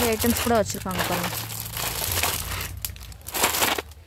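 Clear plastic wrap over boxed jewellery sets crinkling as they are handled and shifted, loudest near the end. A voice speaks briefly near the start.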